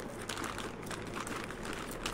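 A clear plastic zip-lock bag crinkling as a hand grips and moves it, a continuous run of small crackles.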